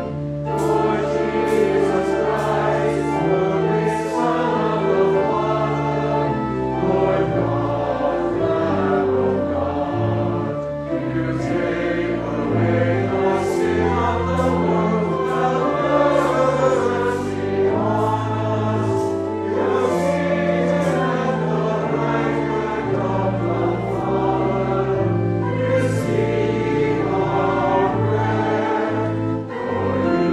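Church choir singing with organ accompaniment: sustained low organ notes change step by step about once a second beneath the voices.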